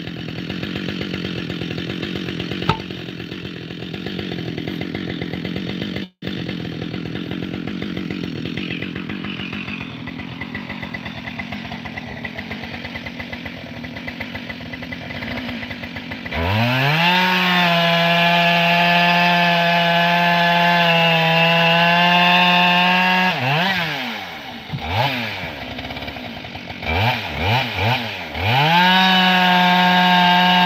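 Chainsaw idling, then revved up about sixteen seconds in and held at full throttle for several seconds, the pitch sagging slightly as if it is cutting into a log. It then drops back with a few quick blips of the throttle and goes back up to full revs near the end.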